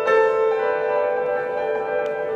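Grand piano: a chord struck right at the start rings on with its notes held, and another note enters about half a second in.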